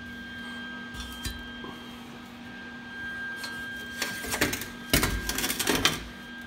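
Metal clattering and scraping as the rusty exhaust manifold is handled on a metal table, in quick rattles from about four seconds in, loudest near the end. Under it runs a steady electrical hum, which comes from the welder.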